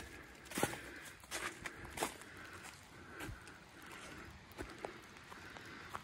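Irregular footsteps of someone walking across wet grass and pine needles.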